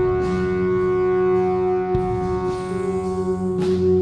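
Live psychedelic rock/jazz-fusion band of electric tuba, electric guitar and drums playing an instrumental passage. A long chord is held steady throughout, with a few ringing cymbal strokes spread across it.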